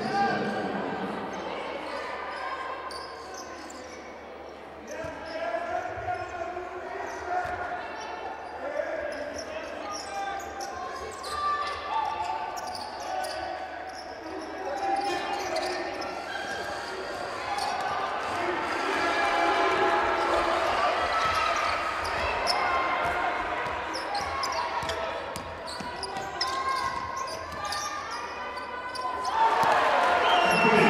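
Basketball bouncing on the court during live play in a large hall, with voices and crowd noise throughout.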